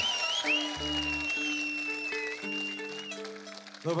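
Live folk band playing slow, held chords that change in steps, with a long high sustained tone above them and applause from the crowd.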